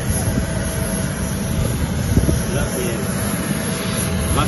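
Steady wind buffeting a handheld phone microphone, rumbling low, over a constant thin whine from a parked jet airliner, with faint voices.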